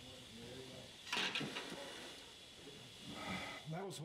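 A red-hot steel sword blade hissing as it is plunged into a quench tank, with a brief louder burst of hiss about a second in as the steel hardens.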